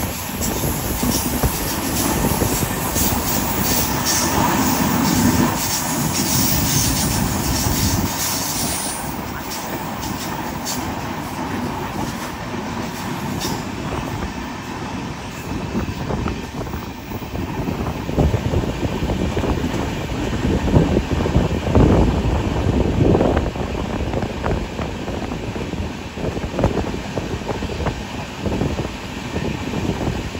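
Passenger train running at speed, heard from an open coach door: a steady rumble of the wheels on the rails, with scattered clacks as the wheels pass over rail joints.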